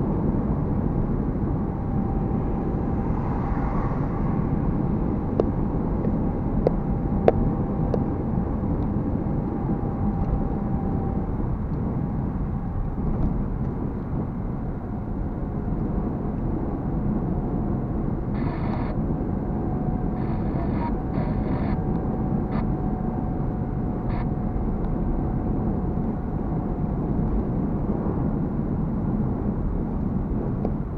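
Steady road and engine noise heard inside a car's cabin while driving at highway speed, with a faint steady whine. A few sharp clicks come about six to seven seconds in, and a handful of short rattles come past the middle.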